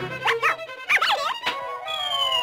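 High-pitched, sped-up cartoon chipmunk chattering and giggling in quick squeaky up-and-down glides over orchestral cartoon score; near the end a falling whistle tone begins as the bucket tips.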